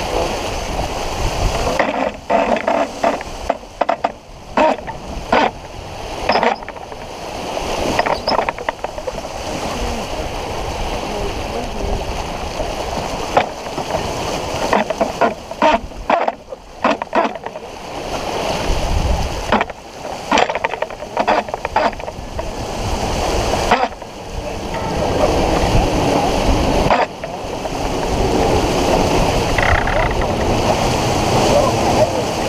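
Water rushing and splashing along the hull of a sailboat under way, a steady loud noise broken by frequent brief knocks and short dips in level.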